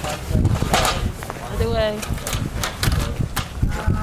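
Indistinct voices with no clear words, including a short, high-pitched voice that rises and falls about two seconds in, over a steady low rumble.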